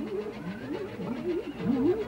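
A cartoon villain's low, gloating laugh in a man's voice.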